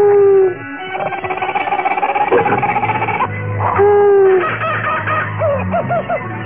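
Cartoon owl hooting twice, each a single slightly falling hoot about half a second long: one at the start and one about four seconds in. Background music plays underneath, with a wavering passage between the hoots.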